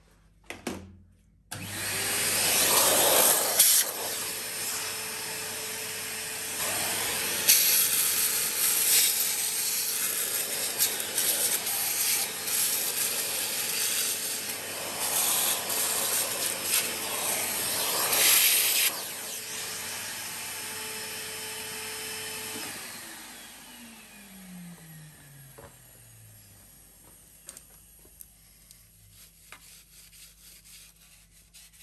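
Milling machine spindle starting, then a 5/16-inch end mill slotting through 5 mm steel angle with a loud, harsh, uneven cutting noise over a steady motor tone. Past halfway the cutting stops, the spindle runs on briefly, and it is switched off and winds down with a falling whine.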